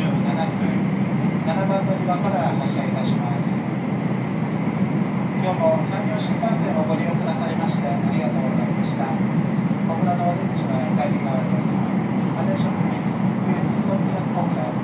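Running noise inside a passenger car of an N700A-series Shinkansen train: a steady rumble with a constant low hum underneath.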